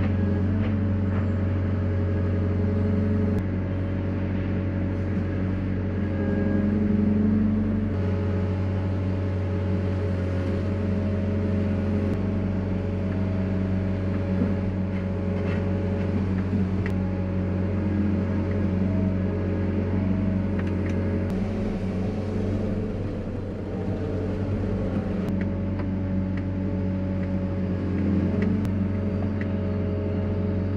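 Diesel engine of a Liebherr 914 excavator running steadily, heard from inside its cab, with the hydraulics working the block clamp. The engine note swells for a couple of seconds, and the whining overtones shift in pitch as the machine lifts and sets down concrete blocks.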